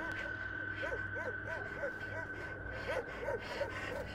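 A person's faint, breathy vocal sounds in quick strings of short rising-and-falling pulses, about a second in and again near the end, over a steady high-pitched tone and a low hum.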